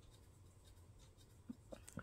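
Near silence: room tone, with a few faint short ticks near the end.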